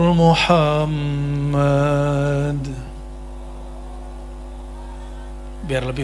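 A man's voice chanting long held notes through a microphone, the second note fading out about three seconds in. A steady electrical hum from the sound system is left after it, and speech starts near the end.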